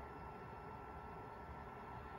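Quiet room tone: a faint steady hiss with a thin, steady high hum.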